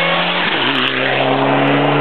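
Mitsubishi Lancer Evolution rally car's turbocharged four-cylinder engine at high revs as the car passes close by at race speed. The engine note breaks briefly about half a second in, then carries on steady as the car pulls away.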